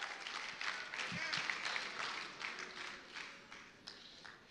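Congregation applauding in a large hall, with a few faint voices mixed in; the clapping fades away over about three seconds.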